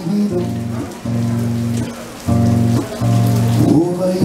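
Cello bowing a run of long, steady low notes, sliding in pitch between some of them, over a strummed acoustic guitar.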